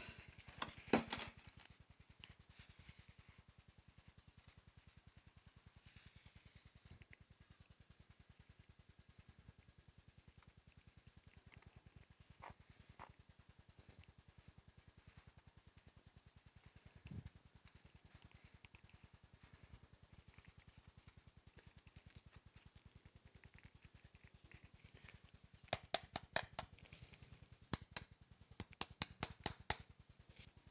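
Faint scattered clicks of a metal spoon picking at a pattern in a sand mould. Near the end comes a quick run of sharp ticks, several a second, as the spoon taps at the pattern, which is stuck in the sand.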